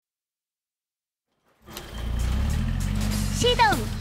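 Silence for about a second and a half, then a cartoon bus engine sound effect starts and runs steadily and low. A child's singing voice comes in near the end, with the song's backing music.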